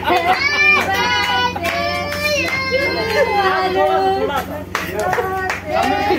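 Several voices, children among them, singing and talking together over scattered hand claps while a birthday cake is cut, with some notes held long.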